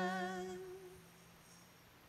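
The last note of a sung "Amén", one voice holding a steady pitch that fades out within the first second, leaving quiet room tone.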